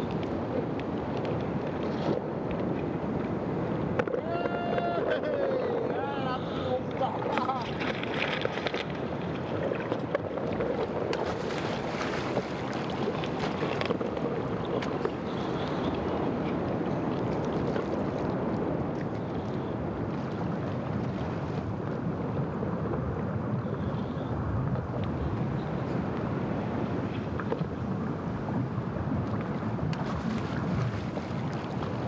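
Steady wash of sea water and surf noise, with wind rumbling on the microphone. About four seconds in comes a brief wavering pitched sound, voice-like.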